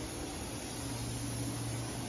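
Steady hiss of water running from a garden hose onto a wet deck, over a low steady hum.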